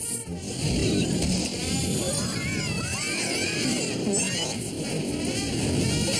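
Cartoon soundtrack: busy music under a dense rushing sound effect, with short high cries partway through.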